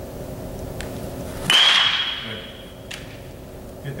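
A baseball bat hits a pitched ball about a second and a half in: a sharp crack followed by a high ringing tone that lasts about a second and a half, then cuts off with a click.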